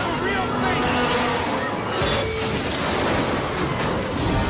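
Dense roar of tornado wind with crashing debris, from a film soundtrack, with people crying out in the first second.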